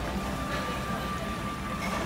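Steady low rumble of restaurant background noise, with a faint thin high tone held from about half a second in.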